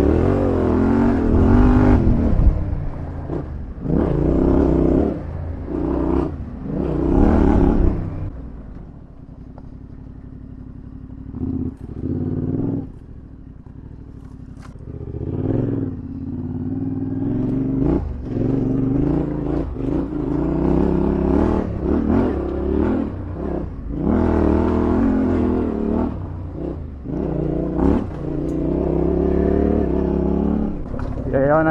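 Yamaha Ténéré 700 parallel-twin engine being ridden, surging under throttle several times in the first eight seconds. It drops to a quieter low-rev lull from about nine to fifteen seconds, then pulls steadily again with small rises and falls.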